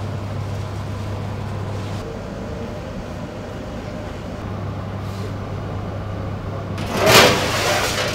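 Steady low electrical hum of bakery machinery at the deck ovens. Near the end comes a loud, noisy rushing scrape lasting about a second.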